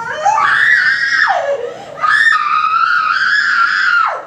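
A woman screaming in two long, high-pitched cries. The first falls away after about a second and a half; the second starts about two seconds in and is held fairly level for about two seconds.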